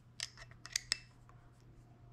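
A quick run of light metallic clicks in the first second, each with a brief high ring: a small metal ring with a red rubber rim tapping and clicking against the metal body of a flashlight as it is handled.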